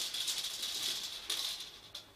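A dry, high-pitched rattling, like a shaker, that fades and stops near the end.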